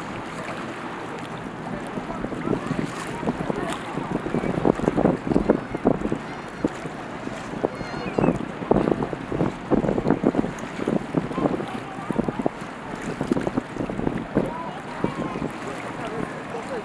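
Harbour water lapping and slapping in short, irregular splashes, busiest through the middle, over a steady low rush of wind on the microphone.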